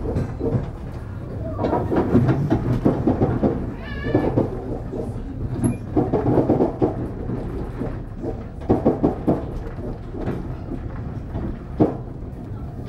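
Passenger train running, heard from inside the carriage: a steady low rumble with irregular knocks and rattles from the wheels and car body. About four seconds in comes a brief high-pitched wavering cry.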